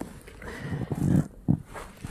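Soft movement sounds of a person shifting on an exercise mat and taking hold of a pole, with a short knock about a second and a half in.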